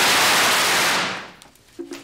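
Firecrackers going off in one dense, continuous burst that stops about a second in and dies away. A man laughs near the end.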